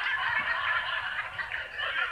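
Laughter: a boy laughing hard together with a sitcom's studio audience laughing.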